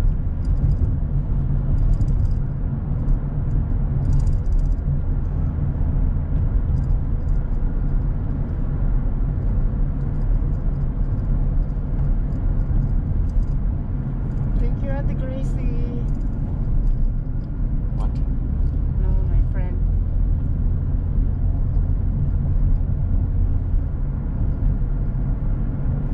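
Steady low rumble of a car's engine and tyres heard from inside the cabin with the windows up, while driving at low speed.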